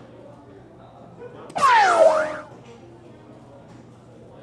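Electronic soft-tip dartboard machine playing a sound effect: a loud swooping electronic tone that glides downward for about a second, starting about one and a half seconds in, over low chatter in the hall.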